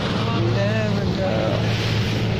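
Motorboat engine running steadily under way, a constant low drone, with the rush of water and wind along the moving hull.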